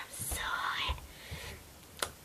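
A girl's whispered, breathy vocal sound without voiced pitch, lasting about a second near the start, then fading to quiet handling noise.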